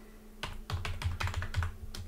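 Computer keyboard being typed on: a quick run of keystrokes that starts about half a second in.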